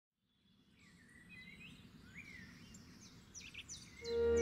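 Faint birdsong: small birds chirping and whistling, starting about a second in, with a run of quick downward-sweeping chirps near the end.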